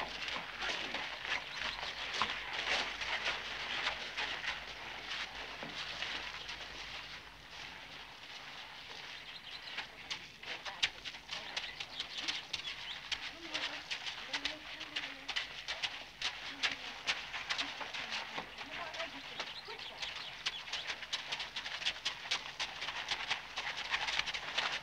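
Stable-yard ambience: a steady background hiss dotted with many short clicks and scuffs of horses' hooves and footsteps on a dirt yard, with faint murmured voices around the middle.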